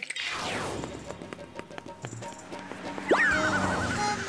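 Cartoon sound effects over background music: a falling whistle-like glide at the start, a run of quick clip-clop knocks, then about three seconds in a sudden rising glide into a loud warbling tone.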